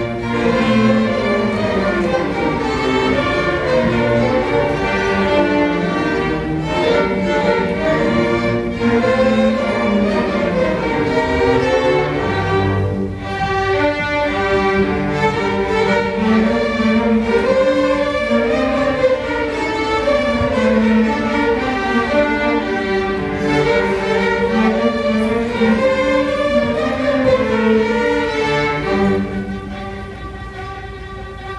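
Student string orchestra of violins, violas and cellos playing an arrangement of a bourrée, a lively French dance.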